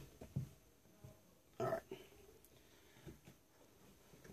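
Quiet room with a few faint clicks of metal hydraulic fittings being handled and hand-tightened on a pump.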